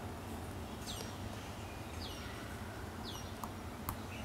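Three faint high chirps, each sliding quickly down in pitch, over a low steady room hum, with a few soft ticks.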